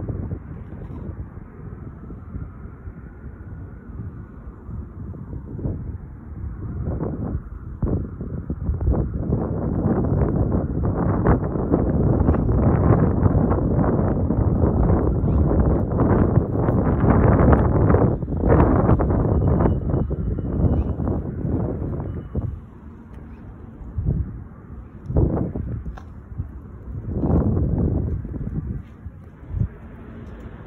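Wind buffeting a phone microphone outdoors: a low rumbling noise that comes and goes in gusts, strongest in the middle stretch.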